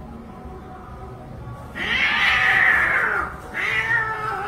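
Cats fighting: one loud drawn-out yowl about halfway through that falls in pitch, then a second yowl starting near the end.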